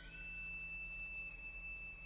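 Solo violin sliding quickly up into a single high, soft note and holding it steadily, an almost pure, thin tone.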